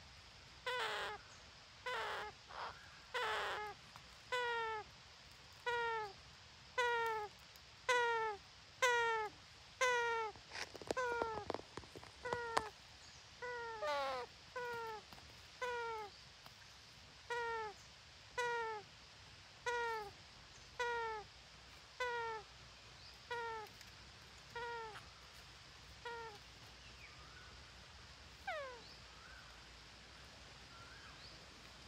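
An animal's short call with a falling pitch, repeated steadily about once a second some two dozen times and growing fainter toward the end. A spell of crackling clicks sounds about ten to twelve seconds in.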